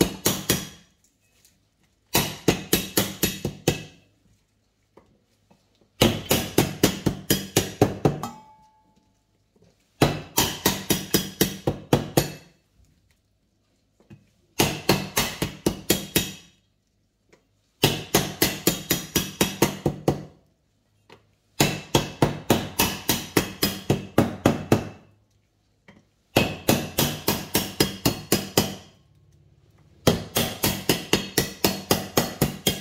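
A cleaver chopping lemongrass stalks on a wooden chopping board, in quick runs of about five strokes a second. Each run lasts about two seconds and comes every four seconds or so, with short pauses between.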